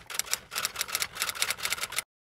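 Intro sound effect of rapid, evenly repeated clicks like typewriter keys, several a second, laid under the animated title card.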